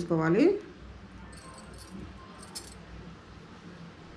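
A woman's voice trails off at the start; then small metal rings on saree tassels jingle faintly twice, about one and a half and two and a half seconds in, as they are handled.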